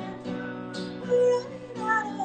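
Acoustic guitar strummed in a steady rhythm while a man and a woman sing together, with one loud held note just after a second in.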